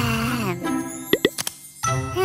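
Cartoon soundtrack: a voice sliding down in pitch over light background music, then a few quick rising pop sound effects about a second in. The music drops out briefly and comes back near the end.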